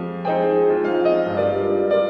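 Grand piano played solo in an improvisation: chords struck about three times, with a low bass note coming in a little past halfway.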